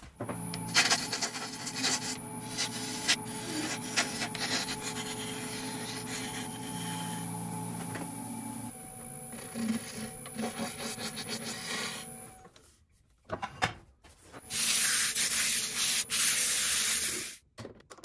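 Wood lathe running, its motor giving a low steady hum, while a turning tool scrapes and cuts the spinning workpiece. A few scrapes and knocks follow, then a loud steady hiss for about three seconds near the end that stops suddenly.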